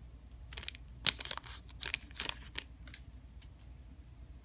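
Foil booster-pack wrapper crinkling and rustling in the hands, a handful of short, sharp crackles in the first two and a half seconds as the pack is handled and opened.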